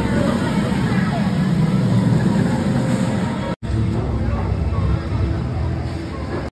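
A steel roller coaster train running along its track close by, a loud, steady rumble, with people talking nearby. The sound drops out for an instant a little over halfway through, then the rumble goes on slightly quieter.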